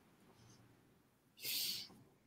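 Near silence, then a short, soft breathy hiss about one and a half seconds in, like a person drawing breath just before speaking.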